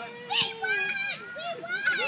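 Young children's voices, shouting and squealing at play, mixed with adults' voices, several at once, with a loud shout about half a second in.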